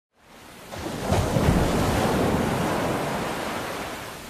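Sea surf washing onto a beach, with wind. It swells up over the first second and then slowly eases.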